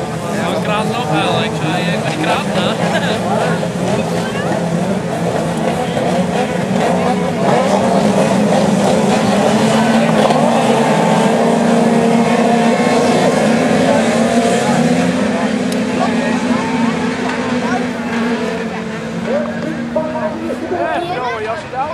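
Engines of several race cars running on a dirt track, their notes rising and falling as they rev and change gear, growing louder in the middle and easing off toward the end.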